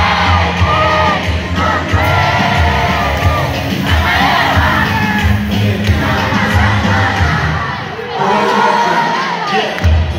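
Live music through a club sound system, a heavy bass beat under loud voices shouting and singing along. The bass drops out for about the last two seconds and kicks back in right after.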